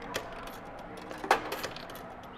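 Tokens being dropped into the coin slot of an arcade shooting-gallery game: a few short metallic clicks, the clearest a little past halfway, over a faint steady hum.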